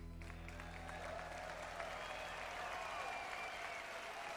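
Concert audience applauding and cheering in a large hall as a droning ambient instrumental dies away underneath.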